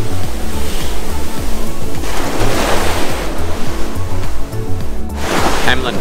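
Background music with a repeating bass line, over the noise of surf washing up on a sandy beach.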